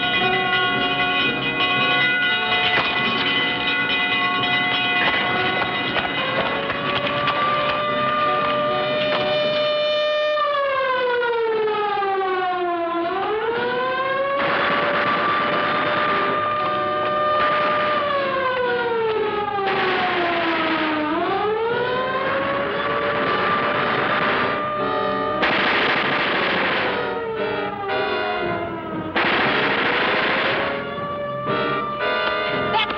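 Orchestral film score. From about six seconds in, a siren wails over it, its pitch sliding slowly down and back up in long cycles several times, with repeated bursts of noise.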